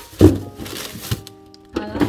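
Background music, with a loud thump about a quarter second in and a lighter knock about a second in as bagged produce is handled in a fridge's plastic crisper drawer.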